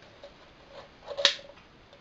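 A single sharp click from the thin aluminium soda can being handled, about halfway through, with a little faint handling noise just before it.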